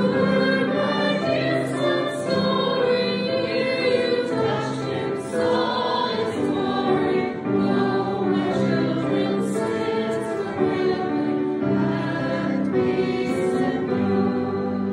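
A hymn sung by many voices together, over held chords of an accompaniment that change every second or two.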